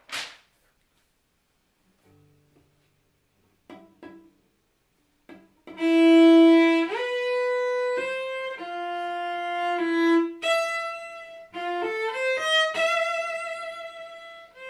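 A sheet of music rustles briefly as the page is turned. Then, from about six seconds in, a cello plays a slow line of sustained high bowed notes, with audible slides between some of them.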